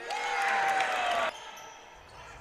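Crowd noise in a basketball gym with a steady tone over it, cutting off suddenly about a second and a quarter in.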